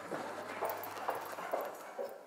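Hurried footsteps on a hard floor, about two steps a second.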